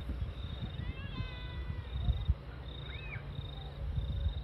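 An insect chirping outdoors in a steady train of short, high pulses. A short high-pitched call comes about a second in and a briefer one near the end, over low rumble and knocks from wind and the hand-held phone.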